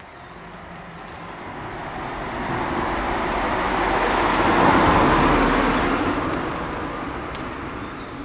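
A road vehicle driving past, its tyre and engine noise growing to its loudest about halfway through and then fading away.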